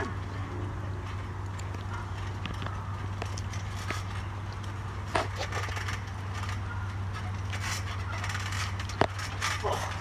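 Steady low background hum with a few brief knocks from feet and bodies on a trampoline mat, one about five seconds in and another near the end.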